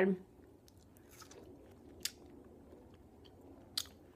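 A person chewing a mouthful of watermelon, with a few faint, soft mouth clicks spread across the moment.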